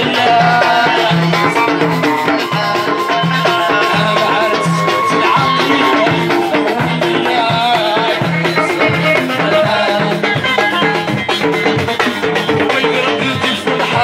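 Live Moroccan Amazigh rways-style band music: banjo and electric guitar playing over a fast, steady beat of clay and frame drums.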